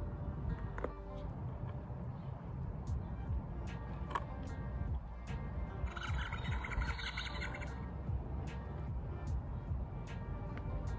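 A children's electronic sound-button book plays a short, tinny pitched sound through its small speaker for a little under two seconds, beginning about six seconds in. Low rumble and light clicks from the books being handled run underneath.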